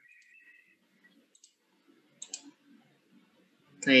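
A few faint, short clicks, like a computer mouse, over quiet room tone: one about a second and a half in and a quick pair a little later. A faint high tone dies away in the first half second.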